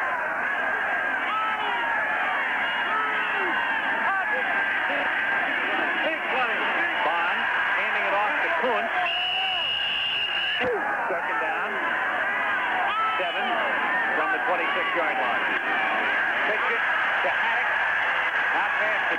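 Stadium crowd noise: a dense mass of many voices shouting and cheering without a break, heard through a muffled, band-limited old TV recording. A steady high whine sounds for about a second and a half, about nine seconds in.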